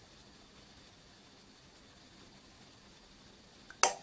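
Near silence, then a single sharp click near the end: the Accuphase E-206 amplifier's speaker protection relay engaging after its power-on delay.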